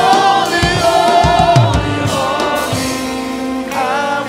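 Gospel worship team of several singers singing long held notes with vibrato.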